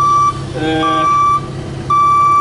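A construction machine's reversing alarm beeping a single steady tone about once a second, over the low steady hum of a running engine.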